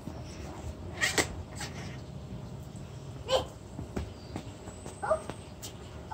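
Young children's short, high-pitched excited squeals and "oh" exclamations, a few seconds apart.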